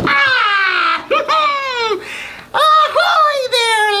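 A high, squeaky cartoon character voice calling out in long gliding, falling and rising cries without clear words.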